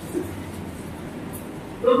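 A pause in a man's amplified speech: steady background hiss of the room and sound system, with one brief faint sound about a fifth of a second in.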